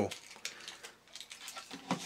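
Light, scattered clicks and taps of a plastic-and-metal toy car chassis being handled and set down on a wooden tabletop.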